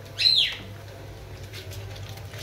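A single short, high-pitched yelp from a wet white puppy being bathed and rubbed down, rising then falling in pitch, over a low steady hum.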